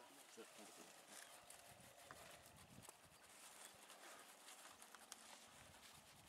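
Near silence, with faint low voices murmuring.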